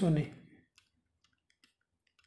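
Faint, irregular clicks from handwriting being put onto a digital board, a few scattered ticks each second.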